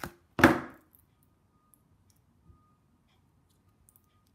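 A single loud knock or thump about half a second in, dying away quickly, followed by near silence.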